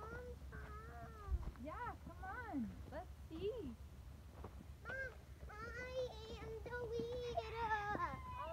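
Wordless voice sounds: short pitched calls that glide up and down, then a longer, nearly steady held note near the end. A single low thump comes just after the first second.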